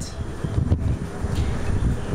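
Low, uneven rumble of wind-like handling noise on a handheld camera's microphone as the camera is turned around, with one brief knock partway through.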